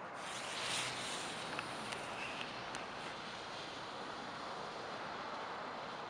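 Steady faint outdoor background hiss with a few soft ticks in the first half.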